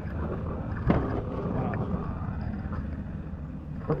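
Low rumbling handling noise on a handheld camera's microphone as the camera is moved about, with a sharp knock about a second in and another near the end.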